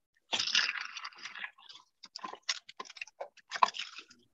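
Kitchen things being handled and moved about: a burst of rustling, then a run of sharp clicks and knocks, as of containers being shifted in a search for ingredients.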